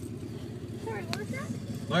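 Steady low rumble of a truck's engine idling, heard from inside the cabin, with brief faint speech about a second in and a single click just after.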